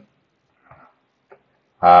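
A pause in a man's speech, near silence with a faint short sound and a soft click just past a second in. Speech resumes near the end.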